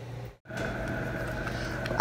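Steady background hum and hiss, with a low tone and a higher whine, cut off briefly by a short dropout about half a second in.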